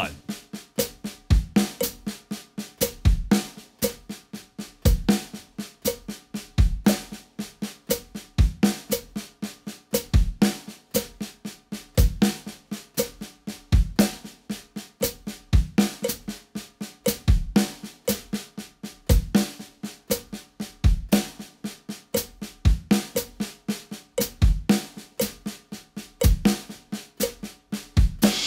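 Drum kit, snare and bass drum: a steady stream of sixteenth notes at 60 beats per minute, about four strokes a second, played in groups of seven. Each group is a paradiddle-diddle on the snare with the first note accented and the rest ghosted, closed by one bass drum stroke, so a kick falls about every 1.75 seconds against the beat.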